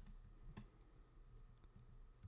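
Near silence: room tone with a couple of faint computer clicks, one about half a second in and a fainter one later.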